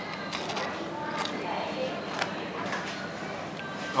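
Faint background voices over a low steady room murmur, with a few light clicks or knocks scattered through.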